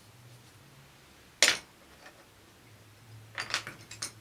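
Wooden coloured pencils knocking on a hard desk: one sharp click about a second and a half in, then a quick cluster of clicks near the end, as a pencil is put down and others are picked through.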